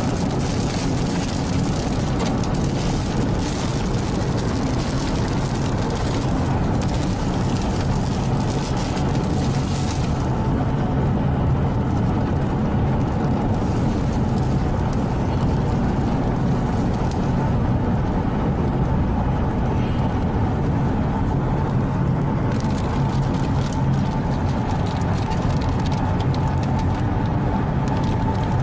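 A vehicle driving on a road in a storm, heard from inside the cabin: a steady rumble of engine and road noise with a hiss of wind over it. The high hiss falls away about ten seconds in.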